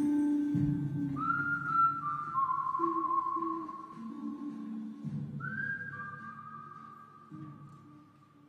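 A man whistling a slow tune of long, held notes into a microphone, over low sustained tones underneath. The sound fades away over the last few seconds.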